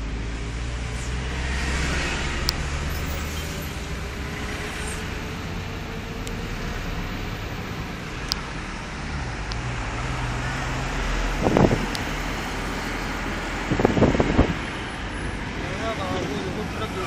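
Motor vehicle engine running steadily with road noise, its pitch drifting slightly. Short louder bursts come about two-thirds of the way in and again near the end.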